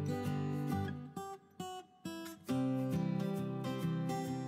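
Background music of strummed acoustic guitar, thinning to a few faint notes a little over a second in and coming back in full about two and a half seconds in.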